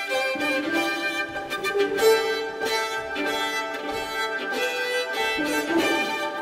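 Solo violin playing a melodic line over an orchestral string accompaniment.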